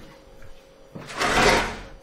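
A door moving, likely pulled open or shut: one brief rush of noise that swells about a second in and fades before the end.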